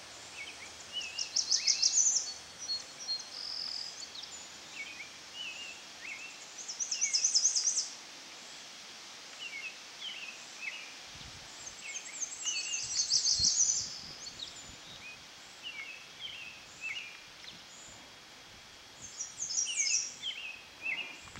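Songbirds singing: a loud, rapid, high trill repeats about every five to six seconds, with short chirps scattered between the trills.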